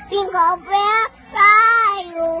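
A young child singing in a high voice: three short notes, a brief pause, then one long held note.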